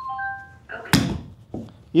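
An iron club strikes a golf ball off a hitting mat once, a sharp crack about a second in, on a steep downward blow. A brief steady multi-note tone sounds just before it, at the start.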